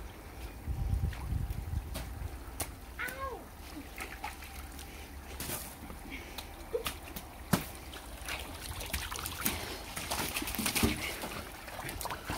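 Slime and water sloshing as a child climbs out of a paddling pool, then a scattering of sharp splats and cracks from water balloons bursting and splashing, thickest about nine to eleven seconds in.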